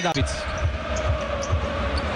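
A basketball being dribbled on a hardwood court, low thumps about twice a second, over the steady noise of an arena crowd. A man's voice calls out a score at the start.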